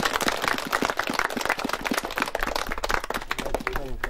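A crowd clapping: a dense, irregular patter of many hand claps.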